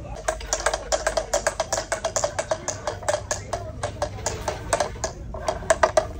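A rapid, uneven series of sharp clicks and taps on a hard object, about five a second. The loudest taps come near the end.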